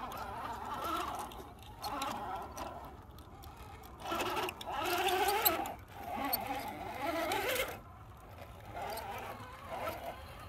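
Axial SCX10 RC rock crawler's electric motor and gear drive whining in about five short throttle bursts of a second or two each, the pitch wavering with the throttle, with small clicks of tyres scrabbling over rock.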